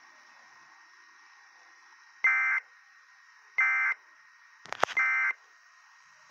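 Emergency Alert System end-of-message data tones from a small device speaker: three short bursts of shrill digital data about 1.3 s apart, the signal that closes the alert. A sharp click comes just before the third burst, over a faint steady hiss.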